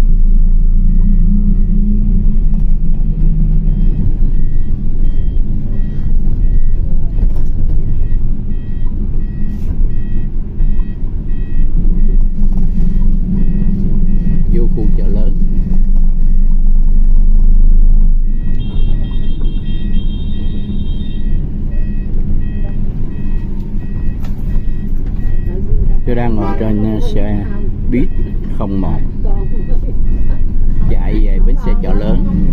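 Steady engine and road rumble heard from inside a moving city bus, with an electronic warning beep repeating evenly, a little under twice a second. A louder, higher-pitched beep sounds for a few seconds past the middle.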